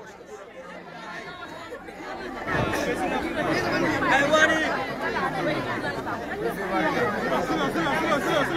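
A crowd of many people talking and calling out at once, with no single voice standing out. It is quieter at first and grows louder about two and a half seconds in.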